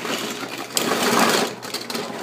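A boxful of die-cast Hot Wheels cars being dumped out onto a pile, making a dense rattling clatter of many small metal-and-plastic toys knocking together, loudest about a second in.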